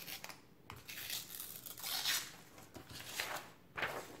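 Sheet of paper being torn along the edge of a plastic tear-guide ruler, in a series of short rips, slowly enough for the paper to take the guide's pattern.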